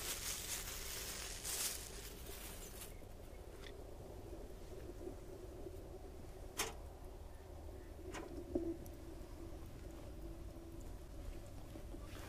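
Plastic wrapping crinkling as raw burger patties are unwrapped, for the first three seconds or so. Then it goes quieter, with two sharp clicks a second and a half apart.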